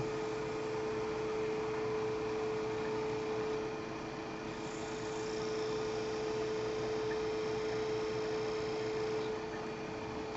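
Wood lathe running at speed with a steady hum, while a guitar-string burn wire is held against the spinning bowl to friction-burn decorative lines.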